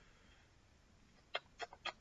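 Near silence: room tone, with four faint short clicks in the last half second or so.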